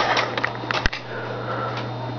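Handling noise: light clicks and rustles with one sharp click a little under a second in, over a steady low hum.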